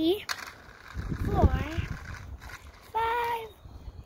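Speech: a young child counting aloud slowly, one short word at a time, with pauses between the numbers.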